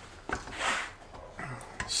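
Gloved hands working a valve spring compressor on a cast cylinder head: a few light metal clicks and a short rasping rub.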